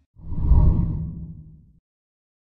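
A whoosh transition sound effect with a deep, rumbling low end. It swells quickly just after the start and fades away over about a second and a half.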